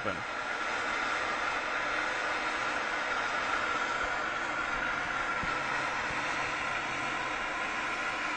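MAPP gas blowtorch running, its flame giving a steady, even hiss.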